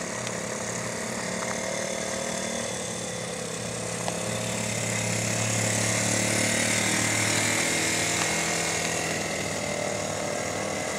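A 1978 Honda Z50 mini trail bike's small single-cylinder four-stroke engine runs steadily as the bike rides by. It grows louder around the middle as it passes close, then eases a little as it moves away.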